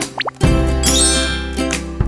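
Light background music on plucked strings, ukulele-like, with a quick rising 'bloop' pop sound effect about a quarter second in.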